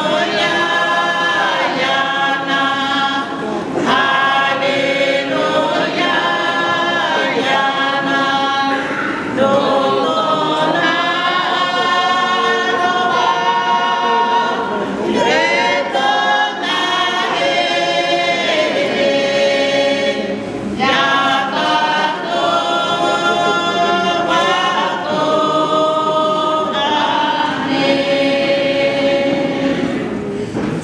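A choir of many voices singing a hymn unaccompanied, in harmony, in phrases of several seconds with long held notes and brief pauses between them.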